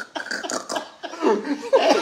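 A man laughing hard in quick breathy bursts, breaking into coughs, his voice rising into a louder laugh near the end.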